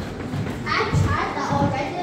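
Background chatter of children's voices, starting a little under a second in.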